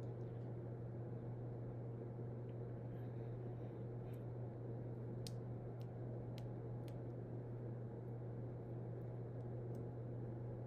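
Steady low hum under faint room noise, with a few soft clicks; no singing.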